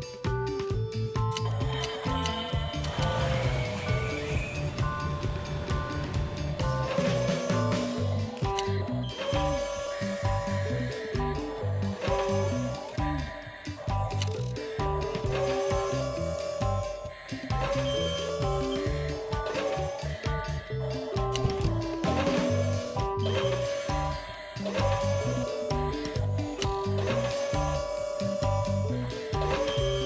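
Instrumental background music with a repeating melody and a steady beat.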